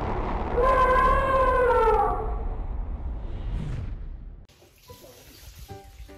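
Logo sting sound effect: a deep rumbling whoosh with a single elephant trumpet call, about a second and a half long, that falls away at its end. The rumble cuts off about four and a half seconds in, and quieter music of short, separate notes begins.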